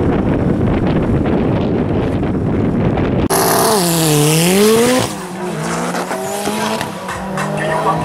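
A loud, dense rumble for about three seconds, then drag cars launching: a turbocharged Mitsubishi Lancer Evolution and a Subaru Impreza leave the line with a hiss, their engine note dipping and then climbing as they accelerate away, settling into a steadier engine drone for the last few seconds.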